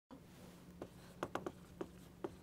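Dry-erase marker writing on a whiteboard: about five short, separate strokes as letters are formed, most of them in the second half, over a faint steady hum.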